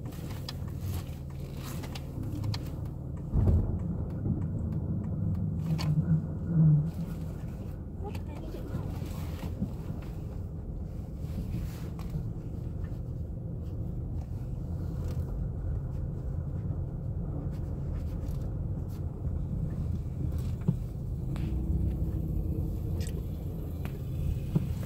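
Car cabin noise while driving slowly: a steady low rumble of engine and tyres, with a few knocks and bumps, the loudest about three and a half seconds in.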